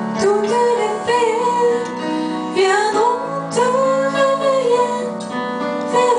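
A woman singing a French lullaby, drawing out long held notes that glide between pitches, over sustained keyboard chords.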